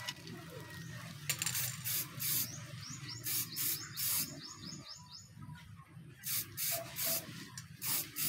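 Aerosol can of clear coat spraying in many short hissing bursts, each a fraction of a second, in groups about a second in, around the middle and again near the end.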